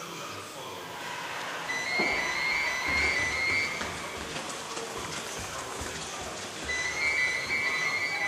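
Indistinct voices mixed with background music. A high held tone sounds twice, once about two seconds in and again near the end.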